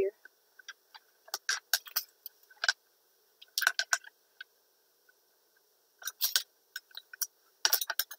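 Wide masking tape being handled, pressed and folded over thin floral wire on a cutting mat: scattered short crackles and taps in clusters, with quiet gaps between.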